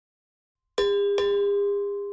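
A notification-bell chime sound effect, struck twice in quick succession a little under a second in, each strike ringing on with a clear pitched tone that slowly fades.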